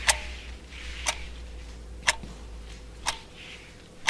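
Countdown timer ticking once a second, four ticks, over a low steady hum.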